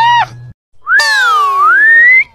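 Cartoon comedy sound effects: a short squeaky pitched sound, then about a second in a long whistle-like tone that dips and rises again over several falling sweeps.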